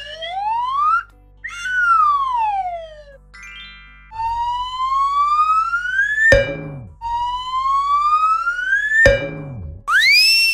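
Cartoon sound effects for parts snapping together: a short rising whistle, a falling whistle, then two long rising whistles, each ending in a deep thud that drops in pitch, one near the middle and one about nine seconds in. Faint steady low tones run underneath.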